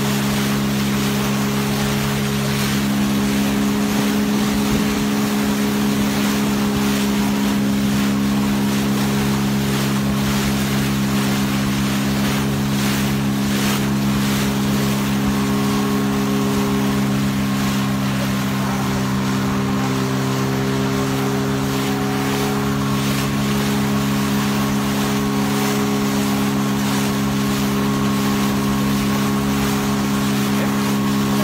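Outboard motor of a small inflatable boat running steadily at speed, a constant drone over the rush of wind and water.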